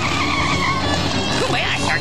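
Cartoon car sound effect: a tire screech through the first second as a car speeds in, over background music.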